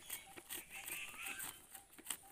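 Faint bird chirps and a few short gliding whistles, with scattered soft clicks and taps.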